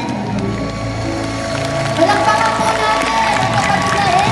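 Music over a stage sound system: sustained chords, then about two seconds in a wavering held melody comes in and the music grows louder.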